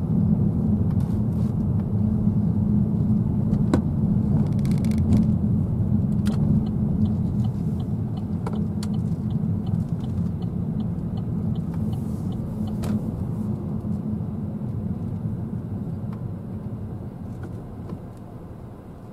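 Car cabin noise while driving: a steady low engine and tyre rumble that eases off toward the end as the car slows. Midway there is a light ticking about twice a second for several seconds, from the turn indicator.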